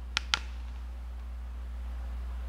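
Two quick clicks near the start, about a fifth of a second apart, over a steady low hum.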